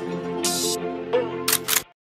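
Instrumental outro of a Punjabi pop song with held tones. A short high hiss comes about a quarter of the way in and two sharp clicks near the end, then the music cuts off abruptly.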